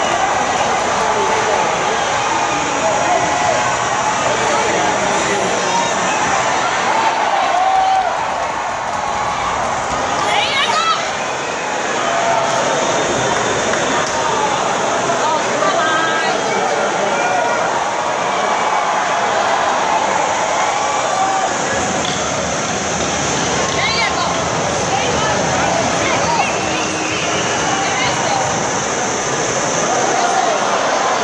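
Arena crowd of hockey spectators talking and calling out as a fight breaks out on the ice, a steady hubbub of many overlapping voices.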